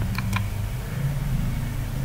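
Three quick computer mouse clicks just after the start, over a steady low hum.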